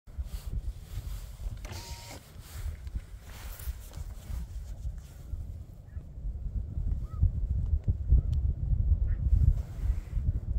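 Wind buffeting the microphone in an uneven low rumble that grows stronger in the second half, with a few faint, distant snow goose calls above it.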